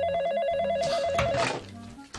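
Telephone ringing with an electronic warbling trill, two tones alternating rapidly, stopping about a second and a half in.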